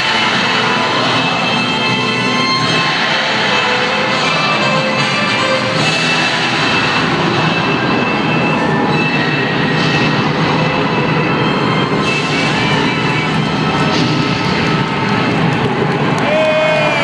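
Live rock concert music filling an arena, a dense droning wash with sustained tones and no clear beat.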